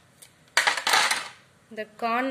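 A pair of metal scissors is set down on a hard surface with a short clatter, after a faint snip.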